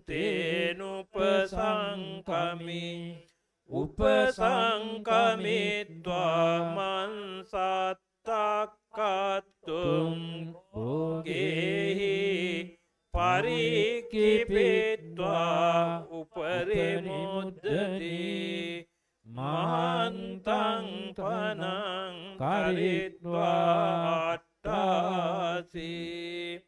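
Buddhist monks chanting Pali scripture from the Tipitaka, amplified through microphones. The recitation runs in short phrases with brief pauses, held mostly on one low reciting pitch.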